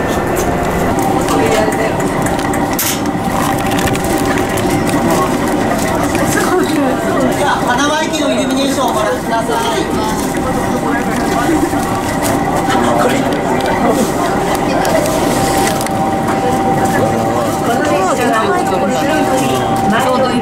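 Many passengers chattering at once inside a train car, over the steady running noise of the railcar. A steady high tone holds from about a second in.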